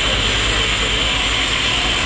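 Steady, loud mechanical noise with a hiss and a low rumble, from construction work on a scaffolded apartment building.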